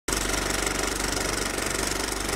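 Film projector running: a steady, rapid mechanical clatter of about a dozen ticks a second, the stock sound of an old film reel rolling.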